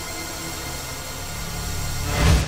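Logo intro sound design: a steady noisy rush with a low rumble underneath, building slightly toward the end.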